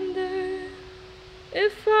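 A female voice singing with acoustic guitar. A long held note ends at the start and a softer note carries on quietly. About a second and a half in she sings again, sliding up into the next note.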